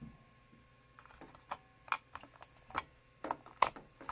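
AA batteries clicking and knocking against a plastic remote control's battery compartment as they are fitted one-handed: several separate sharp clicks, the loudest near the end.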